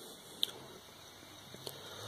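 Razor E300 scooter's 24-volt DC motor running slowly and faintly on a bench speed controller, with two small clicks. Near the end its low hum starts to rise in pitch as the speed is turned up.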